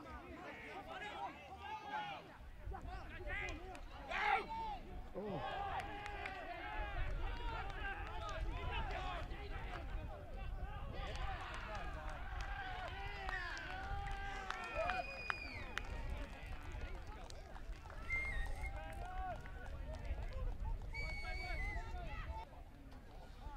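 Spectators and players shouting and cheering, many voices overlapping, after a try in a rugby league match. A referee's whistle blows once at some length past the middle and twice briefly near the end.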